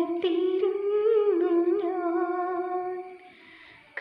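A woman singing a devotional solo unaccompanied: a sung phrase that settles into a long held note and fades out a little after three seconds, followed by a short pause before the next phrase.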